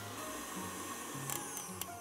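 KitchenAid Artisan stand mixer running at its highest speed, its wire whisk beating choux paste in a glass bowl: a steady small-motor whine.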